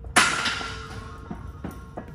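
Plate-loaded Kabuki Transformer Bar being re-racked onto a power rack's steel hooks: one loud metal clank just after the start that rings on for about a second, then a few lighter knocks as it settles.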